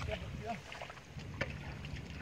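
Faint, indistinct human voice over low background noise, with a soft knock about one and a half seconds in.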